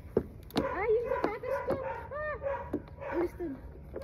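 Women's short, wordless, high-pitched cries and squeals, several brief calls that bend up and down, with a few sharp knocks in the first two seconds.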